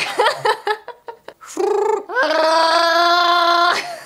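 A human vocal impression of Chewbacca's Wookiee roar: after a few short throaty sounds, one long, steady, high howl of about a second and a half that rises at its onset.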